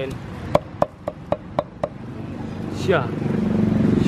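Cleaver chopping leaves on a wooden chopping board: about seven sharp strikes in the first two seconds, roughly four a second. The engine of a passing motor vehicle grows louder near the end.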